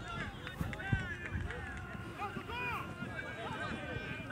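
Players calling and shouting to one another across a soccer field, distant and overlapping, with a single thump about a second in.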